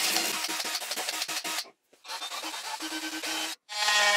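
Cordless drill boring screw holes into a wooden wall: the motor hum comes with the crackle of the bit cutting, in two short stretches that each cut off suddenly. Just before the end an oscillating multi-tool starts with a steady buzz.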